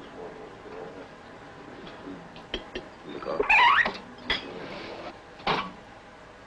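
Light clinks of china cups and cutlery at a table over a soft steady background, with a short rising whine-like sound about three and a half seconds in, the loudest thing, and a couple of brief sounds after it.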